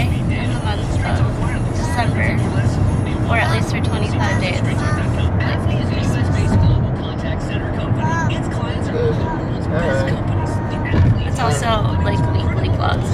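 Steady low road and engine rumble inside a moving car's cabin, under voices and background music.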